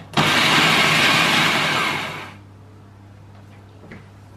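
Food processor motor switched on, grinding dry oats with cocoa powder and spices into a powder. It starts suddenly, runs steadily for about two seconds, then winds down.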